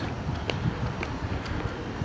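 City street background noise: a steady hiss of distant traffic and wind on the microphone, with a few faint footstep taps on the concrete sidewalk about half a second apart.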